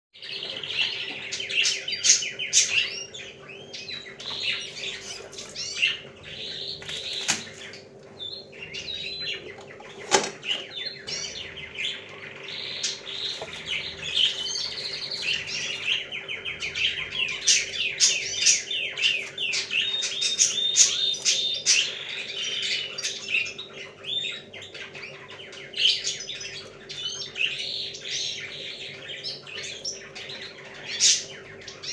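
Many small birds chirping and twittering busily and without pause, over a steady low hum, with a single sharp knock about ten seconds in.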